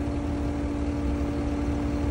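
Compact track loader's diesel engine running steadily at idle, a low rumble with a constant steady tone over it.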